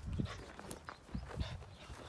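Belgian Shepherd puppy scrambling about on grass and dirt while playing with a rubber toy: a few irregular soft footfalls and scuffs.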